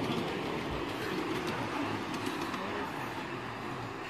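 Ride-on miniature railway train running along its narrow-gauge track: a steady rolling rumble of the carriage wheels on the rails, with faint clicks.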